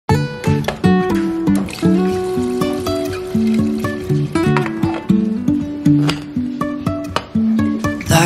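Background music: the instrumental intro of a song, a quick run of pitched notes.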